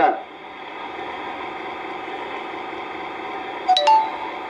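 A pause in a man's speech, filled by a steady background hum of the room. There are a couple of short sharp clicks just before the end.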